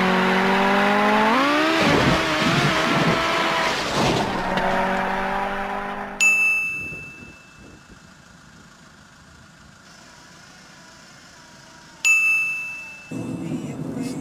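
A car engine at high revs, its pitch climbing about a second and a half in, then wavering before it drops away about six seconds in. A bright ding then rings and fades, and a second ding comes near the end, just before an engine is heard again.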